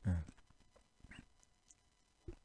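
A man's voice trailing off in a short low sound at the start, then near silence with one faint, brief high squeak about a second in.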